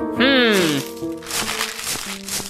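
A short, falling cartoon grumble, then crisp crinkling and crackling of a paper banknote being pulled taut and smoothed out between the hands.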